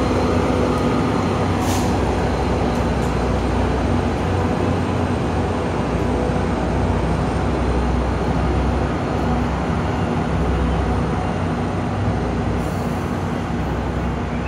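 Diesel commuter-train locomotives running: a steady, heavy low rumble from the Tri-Rail locomotive standing close by, as another train pulls out. A humming tone rides on top and fades out about halfway through.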